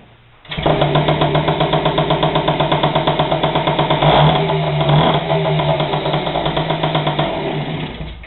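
A 1970 Riga-4 moped's 50 cc two-stroke single-cylinder engine, started by hand, catches about half a second in and runs with a fast, even putter, getting louder for a moment around four seconds in as the throttle is opened. The well-tuned engine starts easily in the cold.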